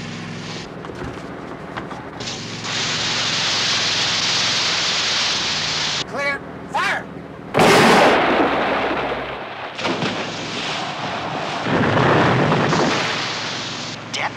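Action soundtrack: a steady rush of water spray and engine as the car skims the sea, then a loud explosion about halfway through, a depth charge going off in the water, with a second blast swelling up near the end.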